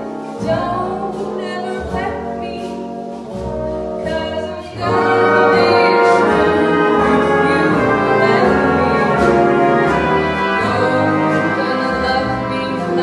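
Female vocalist singing a jazz ballad live with a big band of saxophones, brass, piano and guitar. About five seconds in, the full band swells in much louder behind her.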